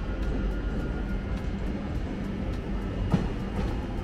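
Passenger train pulling into a covered station platform: a steady low rumble of the train and its wheels, with a few sharp clicks from the track.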